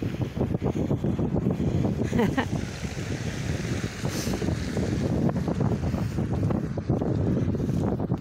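Wind buffeting a phone's microphone outdoors, a continuous, uneven low rumble.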